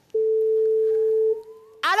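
A telephone ringback tone: one steady beep of a little over a second, the sign that the call is ringing through at the other end.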